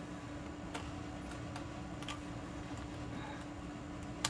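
A few faint, light clicks of thin metal cutting dies being set and pressed onto a magnetic storage sheet, over a steady faint hum.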